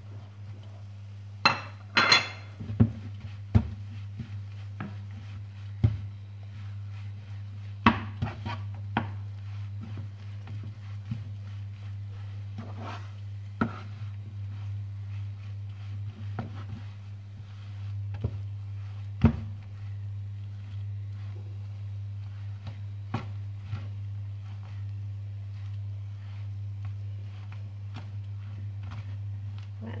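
Wooden spatula scraping, knocking and tapping against a nonstick frying pan as it stirs and presses a thick mung bean and grated coconut filling, in irregular strokes over a steady low hum. The loudest knocks come about two seconds in, at eight seconds and near twenty seconds.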